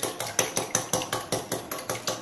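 Wire whisk beating an egg in a glass bowl, the wires clicking against the glass in a quick, even rhythm of about five strokes a second.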